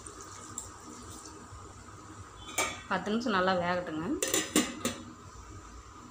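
Water poured from a steel tumbler into a metal cooking pot of greens, a soft steady splashing. About four seconds in come several sharp metallic clanks as a steel plate is set on the pot as a lid.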